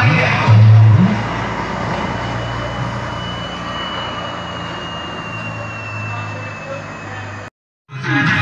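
Music from an LED-lit party vehicle's sound system, heard muffled through street noise with a steady low hum and a faint high whine. The sound cuts out completely for a moment near the end.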